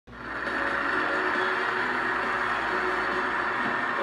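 Studio audience applauding, a steady, dense clapping heard through a television's speaker and picked up off the screen, so it sounds thin and muffled.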